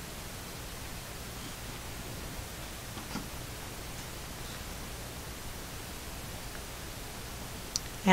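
Quiet steady hiss of room and recording noise, with a few faint soft ticks and rustles, the clearest about three seconds in. The paint trickling onto the canvas makes no sound of its own.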